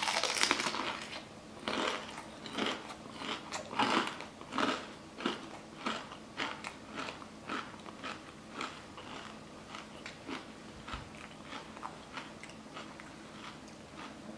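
A close-up bite into a jalapeño stuffed with cream cheese and crunchy Takis chips, then crunchy chewing at about two chews a second. The bite is the loudest sound, and the chewing grows softer toward the end.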